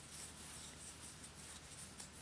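Faint soft rubbing of worsted yarn against a crochet hook and fingers as a stitch is worked.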